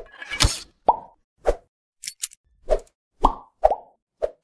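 Synthetic logo-animation sound effects: a quick string of short pops, about half a second apart, with a brief swish just after the start and two thin high clicks near the middle.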